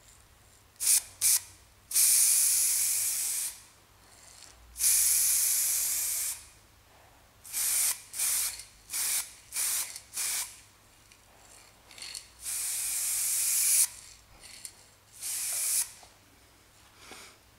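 Spray.Bike Frame Builders metal primer aerosol can hissing in a series of sprays. Two short puffs come first, then long passes of about a second and a half each, with a run of quick short bursts in the middle.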